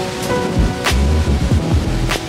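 Background music with a beat: sharp percussion hits over deep, falling bass drum hits.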